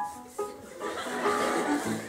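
Stage keyboard playing a few held notes, with new notes starting right at the beginning and again about half a second in.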